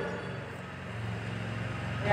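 Quiet room background with a low steady hum that grows a little stronger about a second in.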